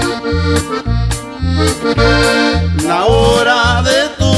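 Norteño music: an accordion plays the lead over a bass pulsing on the beat, and a singer comes in near the end.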